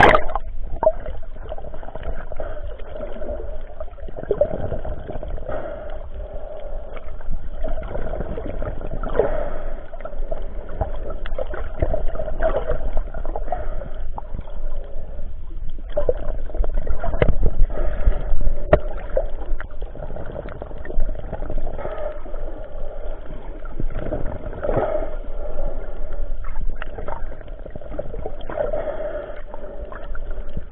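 Water sloshing and gurgling around a snorkeler's camera at the sea surface, swelling about every four seconds.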